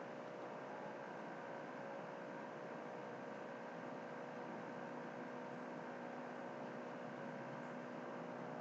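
Steady faint hiss with a low mains-type hum: the recording's background noise during a pause, with no other sound.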